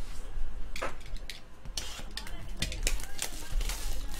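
Clear plastic wrapping crinkling and trading-card packaging being handled: an irregular run of sharp crackles and clicks.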